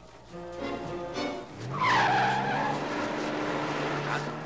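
A car's tyres squealing as it speeds off, loudest about two seconds in, with the engine revving up underneath. A film score plays throughout.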